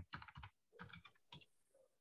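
Faint keystrokes on a computer keyboard as a word is typed: several quick taps in small clusters over about a second and a half.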